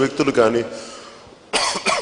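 A man's amplified speech trailing off, then a short cough of a few quick bursts into a handheld microphone about one and a half seconds in.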